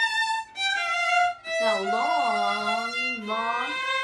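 Violin playing slow, held single bowed notes, about a second each, stepping down in pitch as a finger-pattern drill on low first and low second fingers. A lower, wavering voice sounds along with the violin in the middle.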